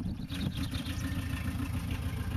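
Volkswagen T25 van's engine idling, a low steady rumble.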